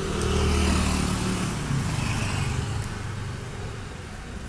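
Low engine hum of a motor vehicle, louder at first and fading away, heard in the background.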